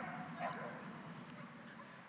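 A dog yipping faintly, two short yips in the first half second, then only a faint background hiss.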